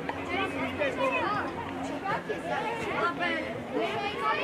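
Several children's voices calling and chattering over one another, high-pitched and overlapping, with no clear words.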